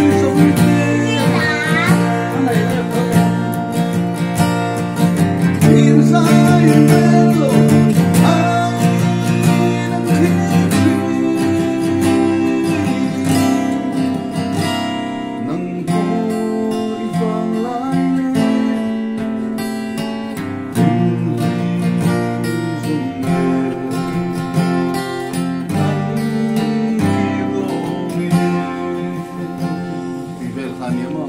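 A man singing while strumming an acoustic guitar, chords ringing steadily under his voice.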